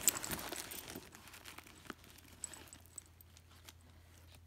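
A hand rummaging inside a handbag: rustling of the bag and its contents, loudest in the first second, then fainter with scattered small clicks.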